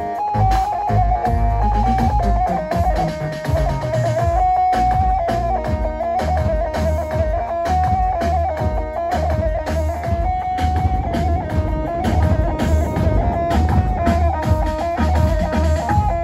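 Electric bağlama (long-necked saz) playing a halay melody over a steady, repeating drum-and-bass beat.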